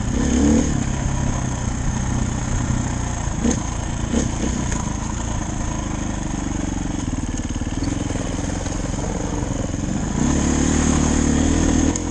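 Dirt bike engine running as the bike rides a rough trail, its note rising and falling with the throttle and growing louder about ten seconds in. A few short knocks a little after three and four seconds in.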